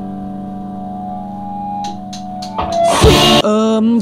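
Live rock band: a distorted guitar chord held and ringing steadily, then a loud drum hit with a cymbal crash about three seconds in, followed by a voice.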